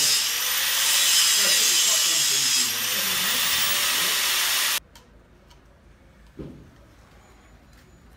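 Handheld angle grinder grinding metal, its whine dipping and recovering as it bites, then cutting off suddenly about five seconds in; it is shaping a replacement clutch lever for the motorcycle. A single light knock follows.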